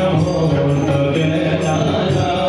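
Devotional aarti chant with musical accompaniment: voices and instruments holding long, steady notes.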